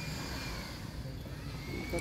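Steady low background rumble with a faint high whine that dips in pitch and then rises again.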